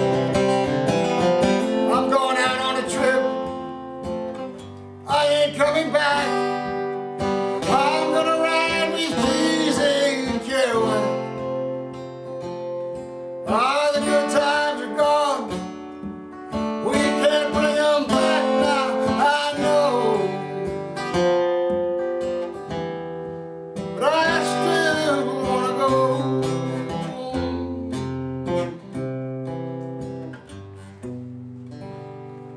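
A man singing to his own acoustic guitar accompaniment, in about four long sung phrases with the guitar carrying on alone in the short gaps between them.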